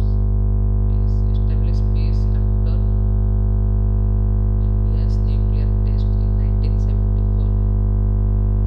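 A loud, unbroken electrical hum and buzz, steady in pitch with many evenly stacked overtones, that swamps the recording. This is the 'bad audio quality' of a mains hum on the microphone line. Faint, broken traces of a voice show through it now and then.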